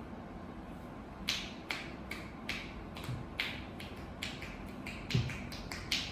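Percussive massage strokes with the palms pressed together and fingers loose, striking the client's leg: crisp clapping taps about two to three a second, starting about a second in.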